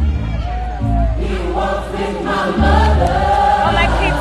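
Gospel choir singing over music with a deep bass line; the voices come in about a second in.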